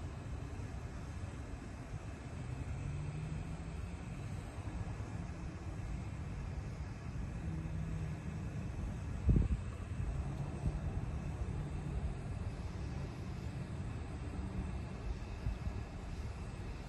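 Low steady rumble of distant engines, with faint humming tones coming and going, and one short thump about nine seconds in.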